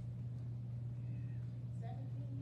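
A steady low hum, with faint, brief voice-like sounds over it about a second in and again near the end.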